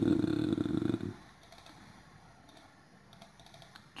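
A voice holding a drawn-out syllable that trails off about a second in, then a quiet stretch with a few faint computer mouse clicks, the clearest near the end.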